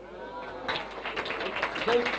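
Audience applauding, the clapping starting under a second in and growing, with voices calling out over it.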